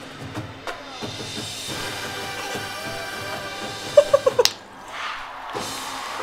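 Marching band brass and percussion holding a long sustained final chord of the show, which cuts off about four and a half seconds in.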